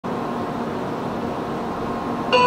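Steady hum and whir of a Shinkansen train standing at the platform, its blowers and on-board equipment running, with faint steady tones in the hum.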